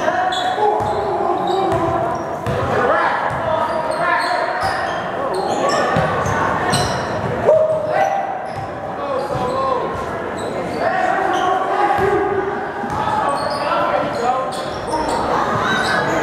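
A basketball bouncing on a hardwood gym floor, in many short thuds through the clip, under the mixed voices and shouts of the crowd and players, echoing in a large gymnasium.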